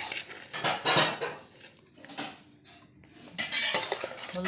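Metal spoon scraping and scooping cooked rice against the sides of a stainless steel pan, in irregular bursts of mixing strokes.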